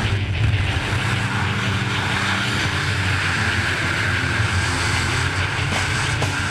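A propeller-driven jump plane's engines running steadily, with a constant rush of wind through the open jump door.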